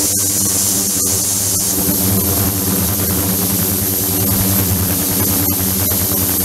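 Ultrasonic tank with immersed transducers running in water: a steady electrical hum under a bright high hiss of cavitation. A thin high whistle sets in about a second and a half in.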